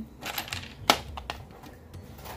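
A few light clicks and taps of wooden chess pieces being handled and knocking together, with one sharper click about a second in.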